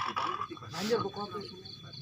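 Indistinct talking voices, with a short breathy noise just before the midpoint.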